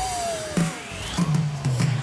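Live pop band playing with drum kit, bass guitar and guitars. A long held note slides slowly downward, over a bass line that steps downward.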